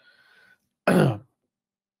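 A man clears his throat once, about a second in.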